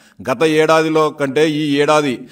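Only speech: a man speaking Telugu, with some drawn-out vowels.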